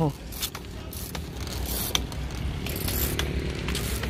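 Bicycles rolling along a road: scattered, irregular clicks and rattles from the bikes' parts over a steady low rumble.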